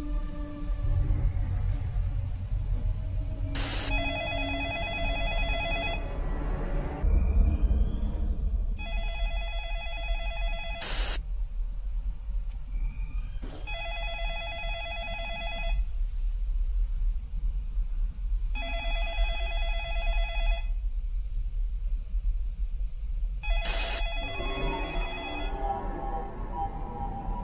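A telephone bell ringing five times, each ring lasting about two seconds and coming about every five seconds, over a low steady rumble.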